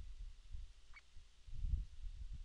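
Breath noise on a close desk microphone: irregular low puffs, strongest near the end, with a faint short chirp about a second in.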